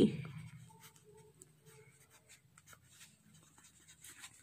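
Pencil writing a word on a workbook page: faint, short scratching strokes of graphite on paper.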